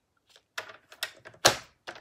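A paper trimmer and cardstock being handled: a series of sharp plastic clicks and knocks with the sheet sliding in between, the loudest knock about one and a half seconds in.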